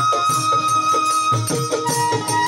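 Bengali Baul folk music playing without singing: a long held melodic note over a steady drum beat.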